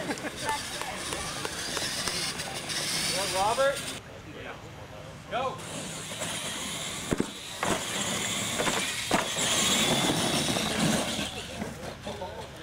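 Radio-controlled monster trucks running on a dirt track, their motors whining, with people's voices and a few sharp knocks around them.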